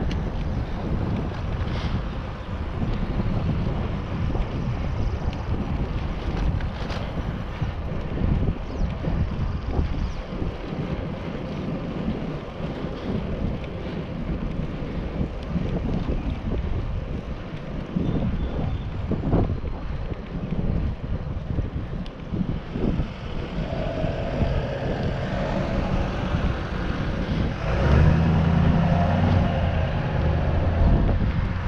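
Wind buffeting the microphone of a camera mounted on a moving bicycle, a steady low rumble while riding. It gets louder near the end, with a faint hum added.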